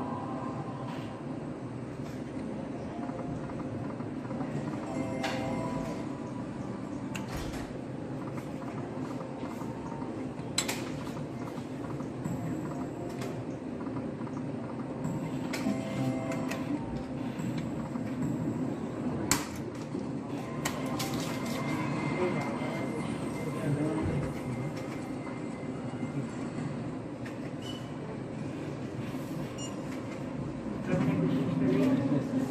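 Slot machine game sounds during free spins: short electronic jingles and reel-stop tones come and go. Under them runs the steady hum of a busy casino floor with indistinct voices, and a few sharp clicks stand out.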